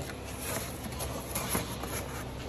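Cardboard being fitted and rustled around a car's exhaust pipe and catalytic converter, with a few short scraping strokes, over a steady hum of shop background noise.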